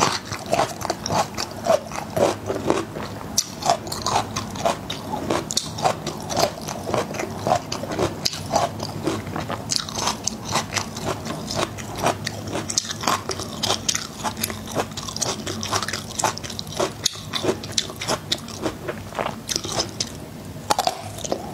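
A person biting and chewing whole peeled garlic cloves: many quick, irregular crisp crunches mixed with wetter chewing sounds.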